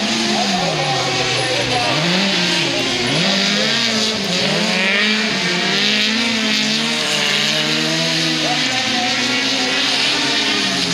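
Autocross race cars running hard on a dirt track, the engine note climbing and dropping over and over as they rev through gears and corners.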